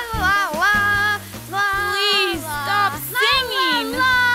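A cartoonish puppet voice singing with swooping, sliding notes over light backing music.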